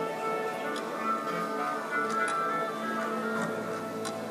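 Symphony orchestra tuning up: many instruments sounding overlapping held notes at once, with a couple of faint clicks.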